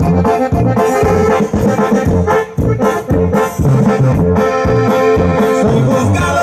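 Live Mexican banda (brass band) playing an instrumental passage: trombones and trumpets holding notes over a steady bass-and-drum beat.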